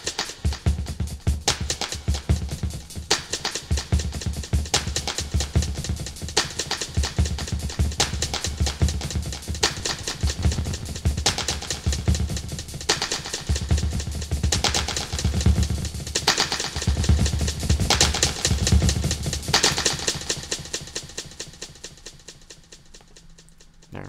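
A drum loop played through a digital delay (Pro Tools Mod Delay II) as its delay time and feedback are changed live, so the echoes shift in timing and pile up over the beat. The sound fades away over the last few seconds.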